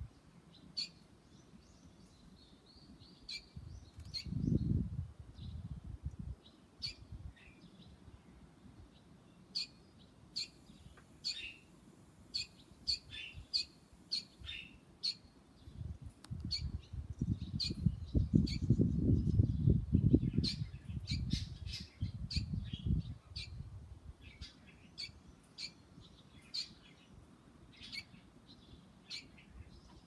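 Barn swallow chirping: short high calls repeated many times throughout, often in quick clusters. A low rumble comes up briefly about four seconds in and again, louder, for several seconds in the middle.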